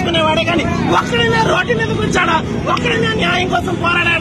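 A woman speaking loudly and forcefully over a crowd, with street traffic noise behind.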